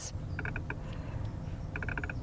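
Cupra Born's touch-sensitive steering-wheel controls giving electronic feedback ticks as a finger swipes across them, like scrolling. There are two quick runs of about five evenly spaced, pitched ticks each, the first about a third of a second in and the second near the end.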